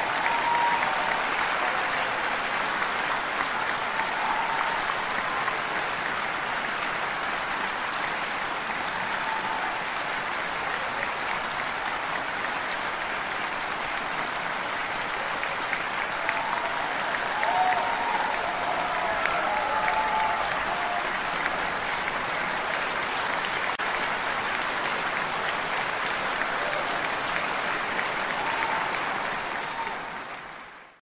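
Concert audience applauding steadily, with a few faint voices or whistles from the crowd over the clapping; it dies away at the very end.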